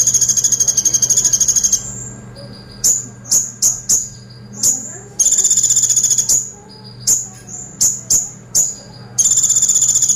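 Male van Hasselt's sunbird (kolibri ninja) singing in full voice: long, rapid, high-pitched rattling trills, three of them, alternating with runs of sharp, high single chips. A faint low hum runs underneath.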